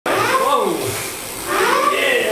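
Wordless voice sounds sliding up and down in pitch, in two stretches.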